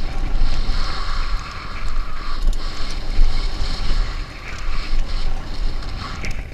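Wind buffeting the microphone of a mountain biker's action camera at speed, with the rumble and rattle of the bike's tyres on a hard-packed dirt trail underneath. The buffeting swells and dips unevenly, with scattered sharp clicks.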